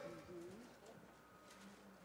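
Near silence: faint room tone in the pause between phrases of speech, with a faint short low murmur.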